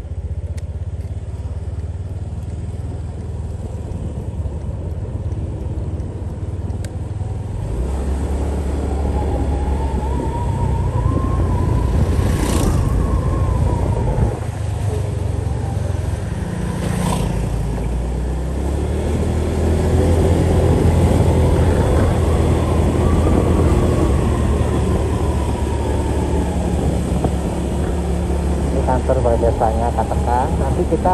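Motorcycle engine running while riding, its pitch rising and falling twice as the bike speeds up and slows down, with two sharp clicks in the middle.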